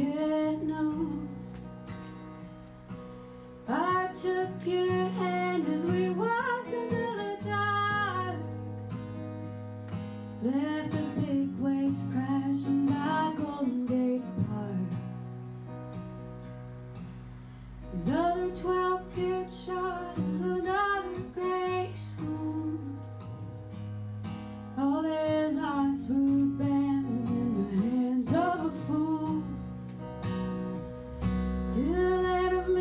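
A woman singing live to her own acoustic guitar. She sings in phrases of about four seconds, with steady strummed chords carrying on alone between them.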